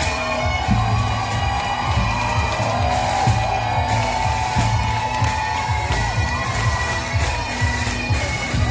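Parade crowd cheering and whooping over music with a regular low beat and a steady held drone.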